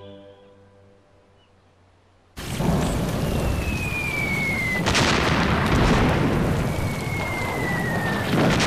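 Music fades out into near silence, then about two and a half seconds in a loud, steady wash of heavy rain starts suddenly. Over the rain an artillery shell whistles down in falling pitch and ends in an explosion about halfway through, and a second falling shell whistle comes near the end.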